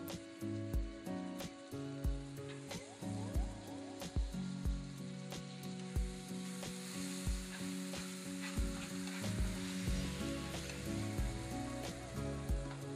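Sliced onions and tomatoes sizzling as they fry in olive oil in a frying pan, stirred now and then with a spatula; the sizzle gets louder about halfway through. Light acoustic background music with a steady beat plays over it.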